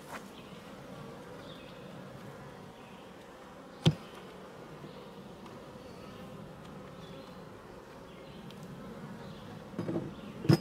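Honey bees buzzing steadily around an opened hive. A single sharp knock sounds about four seconds in.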